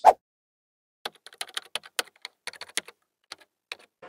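Computer keyboard typing: a quick, irregular run of light key clicks lasting about three seconds, after one sharp hit right at the start.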